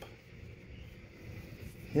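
Quiet outdoor background in a pause between words: only a faint, steady low rumble with no distinct event.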